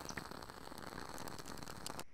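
Wooden wick of a honeysuckle-scented jar candle crackling, heard quietly: a steady patter of fine ticks that sounds like a fireplace.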